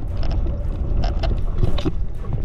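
Underwater sound picked up through a camera housing by a swimmer over a reef: a steady low rumble of water movement with scattered sharp clicks and crackles.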